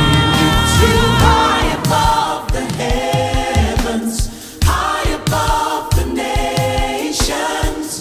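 Gospel choir singing held chords with a live band. After about two seconds a steady bass-and-drum beat comes in under the voices, with a brief drop a little past the middle.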